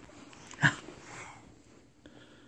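A single short yelp-like vocal sound about two-thirds of a second in, followed by a fainter, softer sound.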